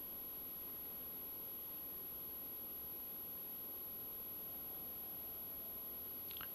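Quiet room tone: a steady low hiss with a faint steady tone running through it, and no other sounds.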